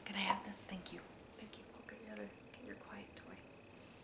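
A woman whispering and breathing softly, loudest in the first half second and faint after that. A faint steady high whine comes in a little before halfway.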